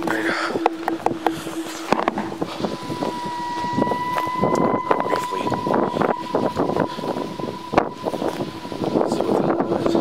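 Footsteps through grass and rustling handling noise, with wind on the microphone. A steady high tone comes in about three seconds in and holds.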